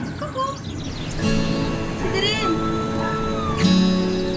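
Background music with sustained notes, over which a young puppy gives short high-pitched squeaks: a couple of faint ones near the start and a clearer one a little after two seconds in.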